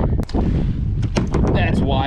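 Wind buffeting the microphone as a steady low rumble, with a sharp knock about a quarter second in.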